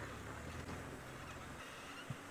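Engine of an open safari game-drive vehicle running steadily as it drives along a dirt track: a low, fairly quiet hum.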